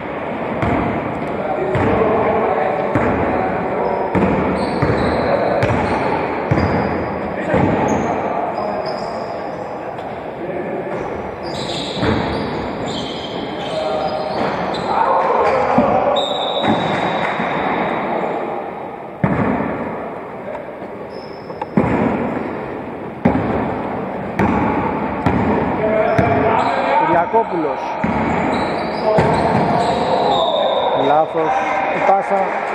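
A basketball bouncing repeatedly on a hardwood gym floor as players dribble and play, with players' voices in the echoing hall.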